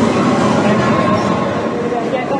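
Busy amusement arcade din: a loud, steady wash of game-machine sounds and crowd noise, with a faint held electronic tone in the middle.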